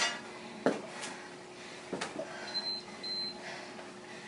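Gymboss interval timer giving two short high beeps about half a second apart, signalling the change of interval. Two dull knocks earlier, the first the loudest sound.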